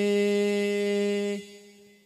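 A singer holding one long, steady sung note at the end of a banjari sholawat phrase; it stops about one and a half seconds in and trails off faintly.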